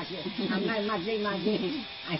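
A person talking, over a steady background hiss.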